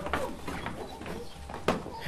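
Footsteps on a stage floor as two people walk off, over low hall noise, with one sharp knock near the end.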